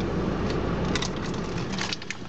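Camera handling noise inside a car cabin: a steady low rumble with rustling and a few light clicks and knocks as the camera is moved.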